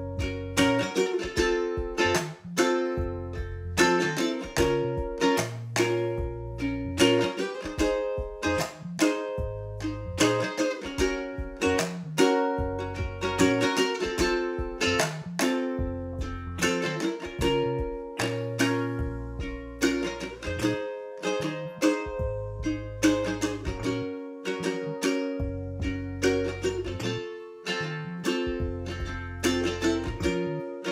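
Ukulele strumming chords in a steady rhythmic pattern of down and up strokes, moving through Gb, F, Bbm and Ab.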